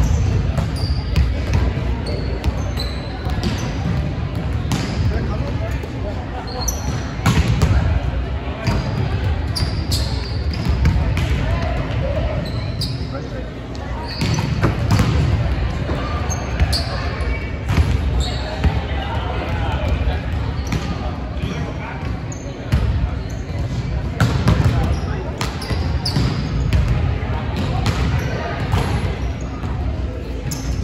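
Volleyball hitting practice on a hardwood gym court: repeated sharp smacks of balls being spiked and bouncing on the floor, with short high sneaker squeaks, echoing in a large hall under indistinct players' voices.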